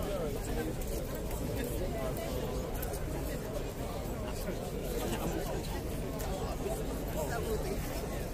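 Outdoor crowd chatter: many people talking at once in a steady, even hubbub of overlapping voices, with no single voice standing out.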